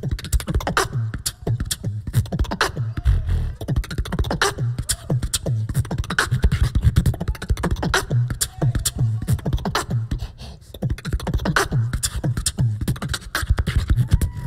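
Solo human beatbox performed into a handheld microphone: a dense, fast stream of mouth-made kick and snare hits over a pulsing low bass, with a few short pitched vocal glides between the beats.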